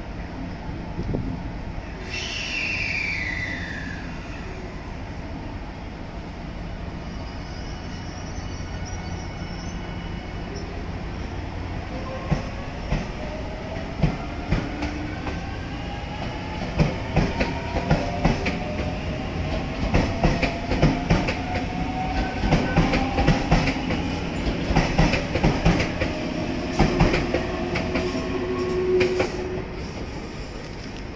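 A JR 383 series electric limited-express train pulls away from the platform, its motors whining in rising tones as it gathers speed. The wheels clack over rail joints and points, more often and louder through the second half, until the last car has passed near the end. A brief falling tone sounds about two seconds in.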